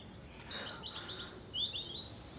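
A bird singing two short, rapid trilling phrases, the second, about a second and a half in, the louder, over faint outdoor background noise.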